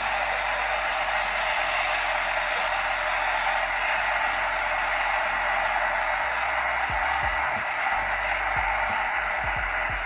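Handheld heat gun running steadily: an even blowing hiss with a faint high whine.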